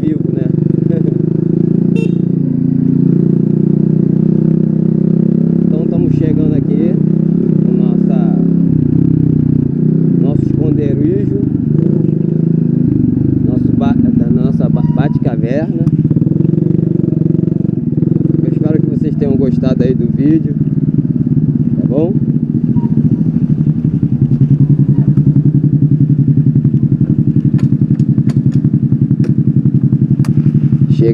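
Mobilete moped's small four-stroke engine running under way, its pitch rising and falling several times as the rider opens and closes the throttle.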